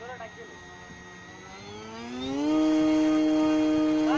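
RC model airplane's motor and propeller throttling up for a hand launch: a faint steady whine rises in pitch about two seconds in, then holds loud and steady.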